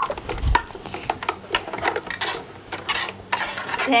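Plastic toy carousel being turned by hand, giving a rapid, irregular plastic clicking and rattling from its hanging swing seats, with a dull thump about half a second in.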